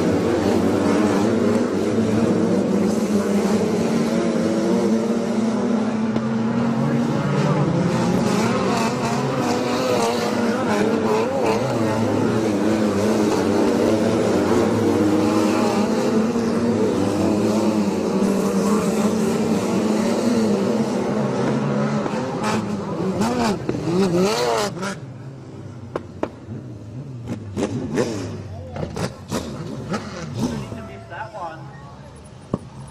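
Several wingless sprint car engines running hard together on a dirt oval, pitch rising and falling as the cars go through the turns. About 25 seconds in the engine noise drops away sharply, leaving quieter scattered sounds.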